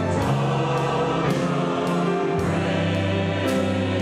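Church choir singing long held 'Amen' chords with an orchestra of strings and brass, the chords shifting every second or so.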